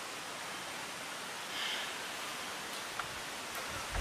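Steady hiss of background noise from the location recording, with a faint brief sound about a second and a half in and a small click near the end.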